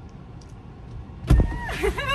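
Inside a parked car, a car door latch clicks and the door is pulled open with a low thump about a second and a half in. A high-pitched, drawn-out vocal call follows right after.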